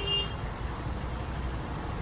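Low, steady background rumble, with a steady high-pitched tone that cuts off about a third of a second in.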